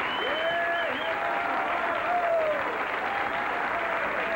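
Studio audience applauding steadily, with a few long cheers rising and falling over the clapping.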